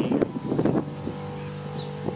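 A steady low engine hum from an unseen motor, with two brief louder bursts in the first second.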